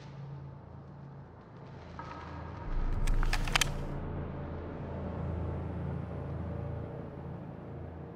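A low, steady rumble that swells about three seconds in, with a quick run of five or six sharp cracks at that moment.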